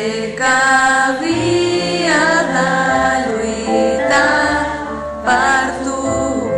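A male singer performing a ballad live, accompanying himself on a stage piano: sustained piano chords under a sung line that bends in pitch, about two seconds in and again near the end.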